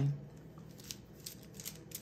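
Glass and acrylic beads of a stretch bracelet clicking lightly against one another as it is worked onto a wrist, a handful of small clicks in the second half.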